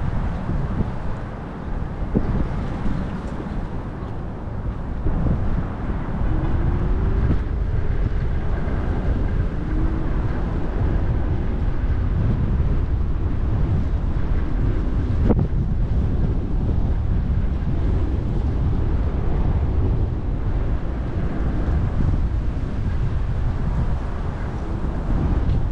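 Wind buffeting the microphone: a steady, heavy low rumble, with one sharp click about fifteen seconds in.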